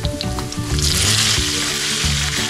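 Chopped tomatoes going into a hot frying pan of browned pork and oil, setting off a loud sizzle that swells up a little under a second in.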